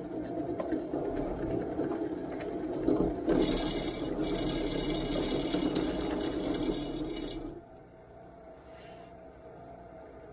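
Drill press running with an end mill cutting into a metal plate on a cross-slide table. The cut turns harsher and louder about three seconds in, then the noise drops sharply about seven and a half seconds in, leaving a quieter hum.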